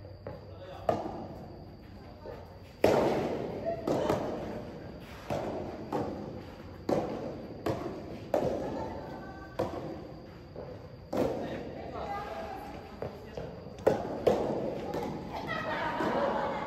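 Soft tennis rally: a dozen or so sharp hits of rackets on the soft rubber ball and of the ball bouncing on the court, irregularly spaced about one to two seconds apart, each echoing in a large hall.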